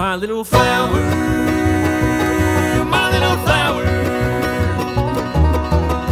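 Bluegrass band playing an instrumental passage: banjo picking over a bass line in a steady beat. Near the start the band drops out briefly with a sliding note, then comes back in.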